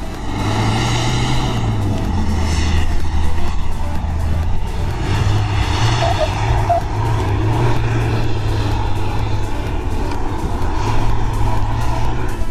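Mitsubishi Pajero Sport SUV's engine running hard under load as it climbs a steep sand slope, its spinning wheels throwing sand.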